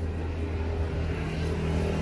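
A steady low mechanical hum with a few faint steady tones, like a motor or engine running.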